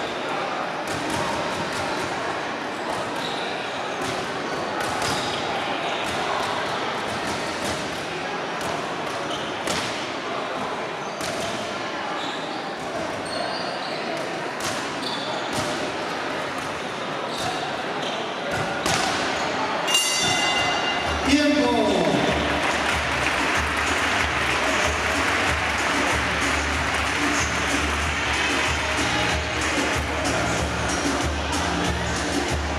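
Echoing sports-hall din of voices with scattered sharp knocks of boxing gloves on pad mitts and feet on the hard floor. About two-thirds of the way in comes a brief bell-like ring, then a falling glide, and music with a steady beat starts up.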